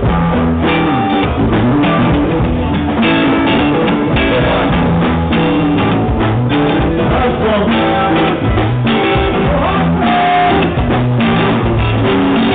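Live band playing: electric guitar, electric bass and drum kit, loud and continuous.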